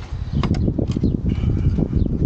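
Close, irregular rustling and scraping with small knocks as a rubber timing belt is worked by hand onto the camshaft pulley of a Peugeot 307's 1.6 engine, starting about half a second in.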